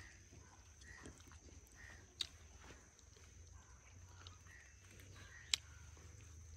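Quiet outdoor ambience: a steady high insect drone with short chirps repeating every second or so, and two sharp snaps, about two seconds in and near the end, from leafy vegetable stems being broken off by hand.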